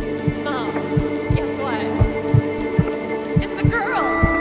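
Heartbeat-like low thumps, two to three a second, under a steady droning film score, with a few short falling electronic warbles.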